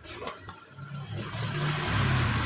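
A cordless drill driving a drill-to-reciprocating-saw converter head, running with no load: a motor whir with a low hum that starts just under a second in and grows louder.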